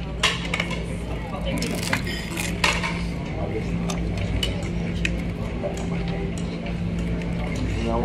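Dishes and cutlery clinking at scattered moments, with a couple of louder clatters about two seconds in, over a steady low hum.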